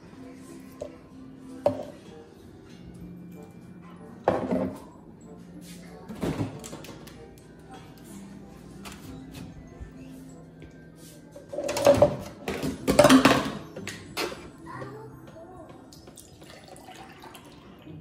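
Soft background music with long held low notes, broken by a few sudden knocks and clatters of kitchen handling, the loudest cluster about twelve to thirteen seconds in.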